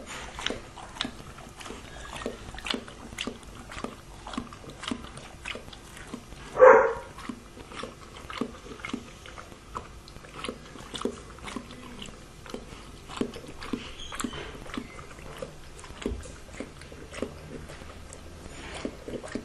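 A dog lapping water from a plastic bowl: quick, repeated laps at roughly three a second, with one louder, brief noise about seven seconds in.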